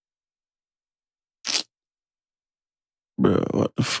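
Dead silence, broken by one short hiss about a second and a half in, then a man's voice near the end.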